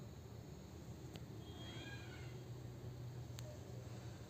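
A faint, short high-pitched call that rises and then falls, about a second and a half in, with a sharp click shortly before it and another near the end, over a low steady hum.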